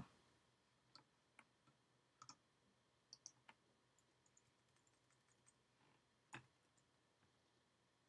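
Near silence broken by a few faint, scattered clicks of a computer keyboard and mouse, most of them in the first half and one more a little past six seconds.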